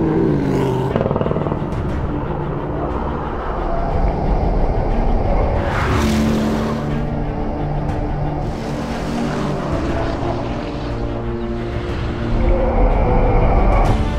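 Soundtrack music mixed with the engine of a 2017 Porsche Panamera driven hard on a race track. There are rushing swells about six and nine seconds in.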